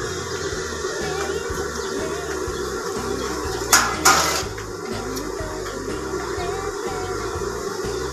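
Industrial sewing machine running as fabric is fed under the needle, under background music, with two sharp knocks about halfway through.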